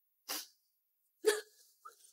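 A woman's distraught sobbing: two short, sharp sobbing gasps, one about a quarter second in and a louder one a little past a second in.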